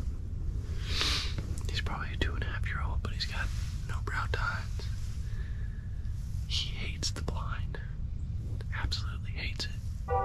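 A man whispering in short, breathy phrases close to the microphone, over a steady low background rumble.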